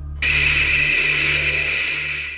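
Loud, steady hissing sound effect for the stop-motion Gamera, starting suddenly about a quarter second in, over a low droning music bed.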